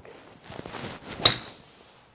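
A golf shot: a brief whoosh of the swing, then about a second in a single sharp crack as the Ping G430 nine wood's clubhead strikes the ball, dying away quickly.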